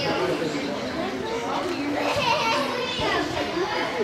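Children's voices shouting and calling out over one another during play on an indoor soccer field, in the reverberant space of a large hall.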